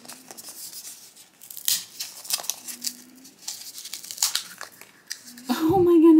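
The orange faceted wrapper of a blind-pack toy figure being torn open by hand: a string of short crinkles and rips.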